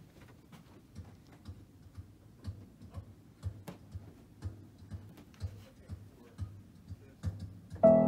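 Faint regular ticking, about two ticks a second, then near the end music starts suddenly and loudly as the PianoDisc wireless player system begins playing a song on the Hallet Davis grand piano.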